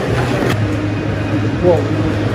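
A steady low hum runs throughout. Near the end a person exclaims 'Whoa!' as a skater falls.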